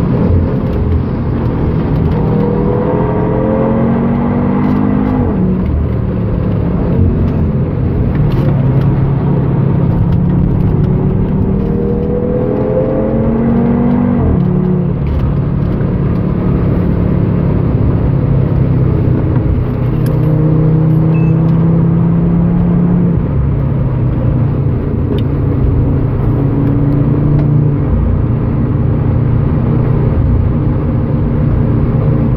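Tuned 2013 Audi TT RS's turbocharged five-cylinder engine heard from inside the cabin at track speed in fourth gear. It climbs in pitch twice, dropping back sharply each time, then runs steadily, over heavy road and wind noise.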